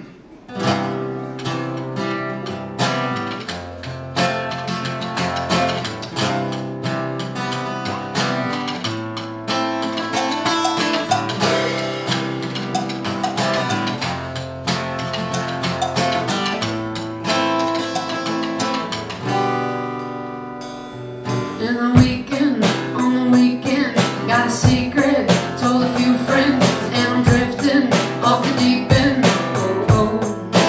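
Live acoustic-electric guitar picking and strumming a song's opening. About 22 seconds in, deep thumps from a homemade paint-bucket percussion kit join in a steady beat.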